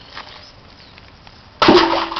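Quiet at first, then near the end a sudden loud crash and splash as an object lands in a concrete drainage pit.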